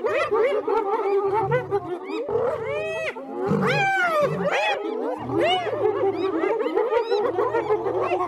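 Overlapping animal calls: many high cries that slide up and down, repeated throughout, over low growls that come and go.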